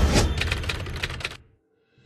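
A fast run of sharp clicks, fading as it goes and stopping about one and a half seconds in, followed by silence.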